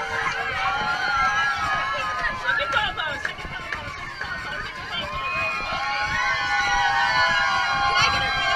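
A crowd of young children cheering and shouting in a school hallway, many high voices overlapping without a break.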